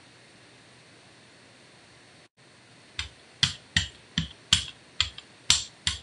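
Low room hiss, then from about halfway a quick, uneven run of about eight sharp clicking taps, as of plastic painting tools knocking on a Gelli printing plate and stencil.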